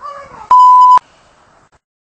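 A censor bleep: one loud, steady 1 kHz tone lasting half a second, starting and stopping abruptly, just after a brief falling cry.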